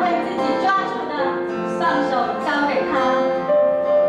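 Worship song played live on acoustic guitar and piano, with several voices singing; one note is held near the end.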